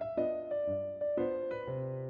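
Soft background piano music, with a melody of single notes struck about twice a second over lower bass notes.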